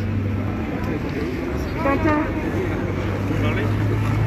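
Voices of people talking in the background, a phrase about two seconds in and another near the end, over a steady low hum.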